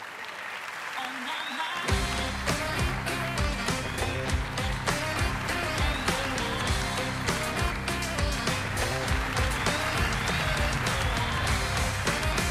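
A studio audience applauds, and about two seconds in a live band comes in with an up-tempo pop number with a strong, steady beat, the applause carrying on underneath.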